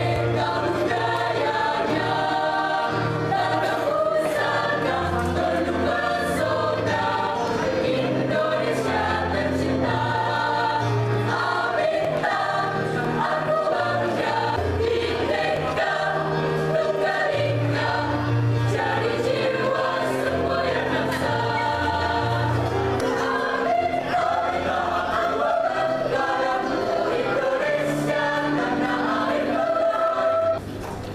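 A group of young voices singing together in unison over accompanying music with a bass line that moves in held steps.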